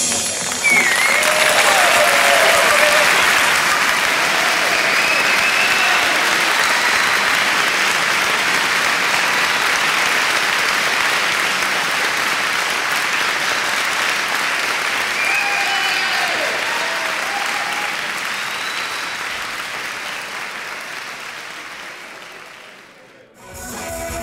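A concert audience applauding and cheering at the end of a rock song. The applause slowly fades away.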